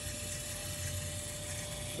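Fuel-injector flow-test bench running at 3 bar pump pressure: a steady hum with a faint, thin, unchanging whine as a Honda CB Twister 250 injector sprays test fluid into a graduated cylinder.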